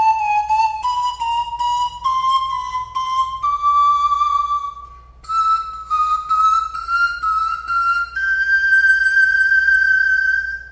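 A 22-pipe Grand Tenor pan flute in C plays a slow rising run in small steps, at about two notes a second, taking in the sharps and flats. The run comes in two phrases, each ending on a longer note, and the last note is held for about two and a half seconds.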